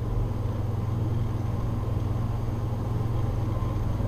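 A steady low hum with a faint even hiss underneath, unchanging throughout. It is the background noise of the recording setup.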